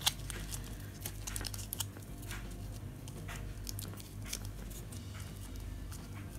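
Light crinkling and crackling of stiff glitter fabric being pinched and handled, in scattered short rustles. A tumble dryer hums steadily underneath.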